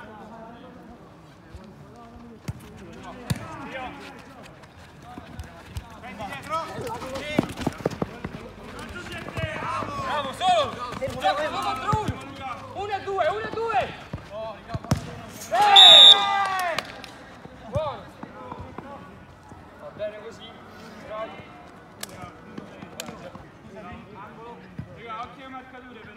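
Football kicks thudding on an artificial five-a-side pitch among players' shouts, with a loud yell about two-thirds of the way in as a goal is scored.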